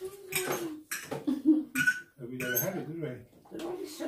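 Metal cutlery clinking and scraping on china plates during a meal, in a few sharp clinks, one of them ringing briefly, with voices talking around them.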